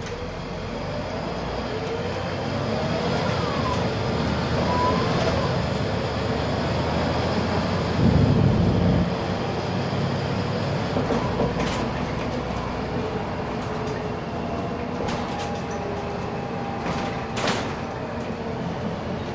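Cabin sound of a Volvo 7000 city bus gathering speed from a stop: engine and transmission running under road noise, with whines that shift in pitch. A louder low rumble comes about eight seconds in, and brief sharp knocks near the end.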